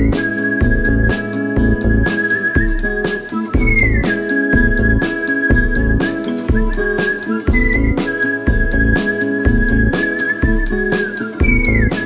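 Whistling in unison, a held melody note that rises briefly and falls back about every four seconds, over an instrumental backing with a steady beat and pulsing bass.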